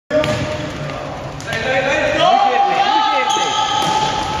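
Futsal players' voices shouting and calling in a reverberant sports hall, with one long held shout in the second half and a few knocks of the ball.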